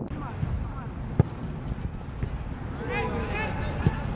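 A football being kicked twice on a grass pitch: a sharp thud about a second in and another near the end, with players shouting and wind rumbling on the microphone.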